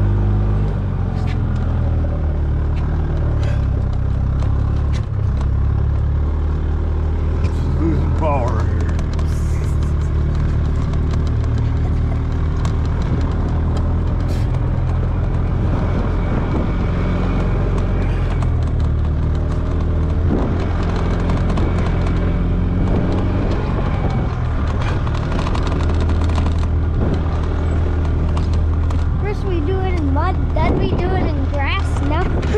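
Gasoline golf cart engine running steadily under load as the cart drives through snow, a continuous low drone.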